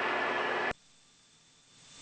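Steady hiss of cockpit noise in a single-engine Piper PA46 Malibu Mirage in flight, cutting off abruptly under a second in and leaving near silence.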